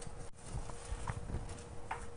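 Quiet handling noise at a wooden pulpit: scattered light taps and knocks, with a few short faint squeaks, over a faint steady hum.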